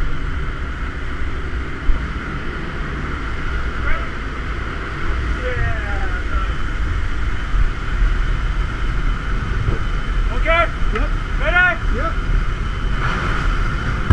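Small single-engine jump plane's engine and propeller droning steadily inside the cabin, with wind noise through the open jump door. Near the end, two short shouted calls.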